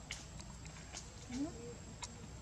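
A macaque giving short rising calls, the loudest about a second and a half in, with a few sharp clicks.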